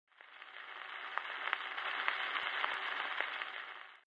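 Surface noise of a 78 rpm shellac record as the stylus runs through the lead-in groove before the music: a steady, fairly quiet hiss with scattered clicks, fading in and out.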